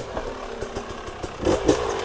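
Dirt bike engine running at low revs, with a short blip of the throttle about one and a half seconds in.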